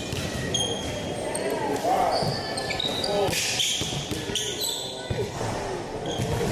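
Basketball dribbling on a hardwood gym floor, with sneakers squeaking in short, high chirps as the players move, in a large echoing gym.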